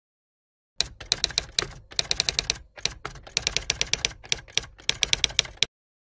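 Typewriter sound effect: rapid sharp key clicks in short runs with brief pauses, starting about a second in and stopping shortly before the end, with dead silence around it.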